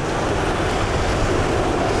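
Steady rush of ocean surf on the beach, mixed with wind blowing across the microphone.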